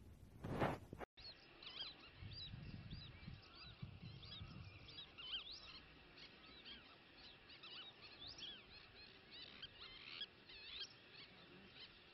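A flock of birds calling: many faint overlapping chirps and whistled calls, dense and unbroken. Before them, about half a second in, a brief loud rush of noise ends in a sudden cut.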